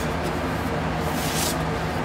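A vinyl record in a paper inner sleeve sliding out of its cardboard album jacket, with a brief papery swish about one and a half seconds in. Under it is the steady hum of room fans.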